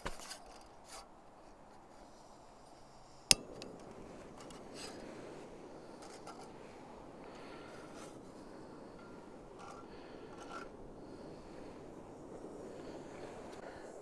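MSR canister gas stove lit with a single sharp click about three seconds in, then its burner running with a steady soft rush as it heats a cup of water to the boil.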